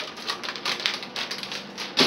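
Plastic-wrapped cheese and lunch-meat packages crinkling and clicking as they are rummaged through in a plastic refrigerator drawer: a run of quick, irregular clicks and rattles, with a sharper knock at the very end.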